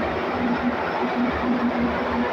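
Steady mechanical din of running machinery, with a wavering low hum through it.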